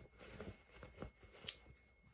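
Near silence, with a few faint rustles of cotton fabric being handled.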